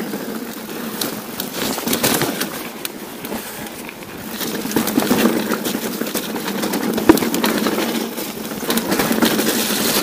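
Steel hardtail mountain bike riding over a rocky singletrack: tyres crunching on stones, with frequent rattles and knocks from the bike and one sharp knock about seven seconds in.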